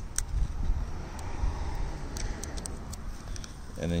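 Steady low outdoor rumble, with a few faint ticks as fingers handle the vinyl grille-bar overlay and its masking film.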